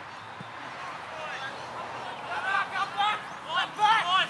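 Several people shouting and calling out on an open football field, with a run of short, loud, high-pitched yells in the last two seconds.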